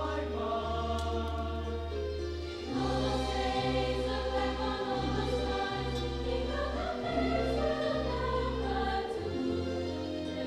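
Mixed choir singing sustained chords over instrumental accompaniment. About three seconds in it grows louder, with deep bass notes changing roughly once a second.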